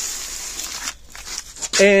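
Paper sacks of blasting sand rustling and scraping as they are handled, a noisy rustle for about the first second, then a few faint clicks. A man's voice comes in near the end.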